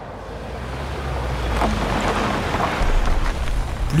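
Sound-design ambience: a low rumbling noise that swells steadily louder, with faint steady tones entering partway through.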